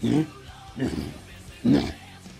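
A man's voice making three short wordless vocal sounds about a second apart, over faint background music.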